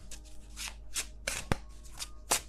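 Tarot Grand Luxe tarot deck being shuffled by hand: a quick run of papery card swishes, with one sharp click about one and a half seconds in.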